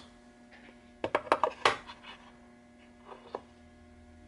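A quick run of light clicks and knocks about a second in, then two more a little after three seconds: a steel Sorensen Center-Mike vernier tool being handled and set down into its felt-lined wooden case.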